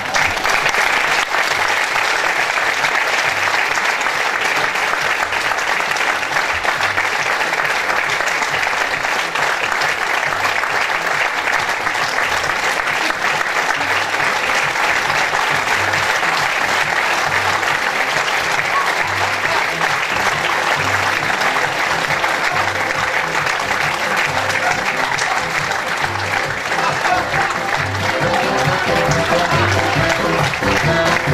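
Theatre audience applauding steadily at a curtain call, over music with a regular beat. The music comes through more plainly near the end.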